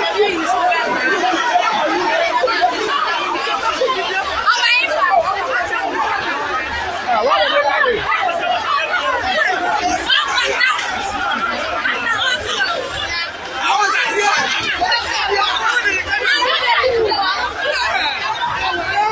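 Crowd chatter: many voices talking at once in a continuous, overlapping babble, with no single speaker standing out.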